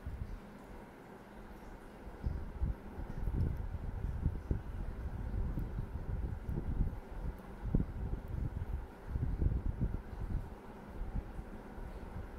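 Irregular low rumble and soft bumps of handling noise on a handheld phone's microphone, starting about two seconds in, over a faint steady hum.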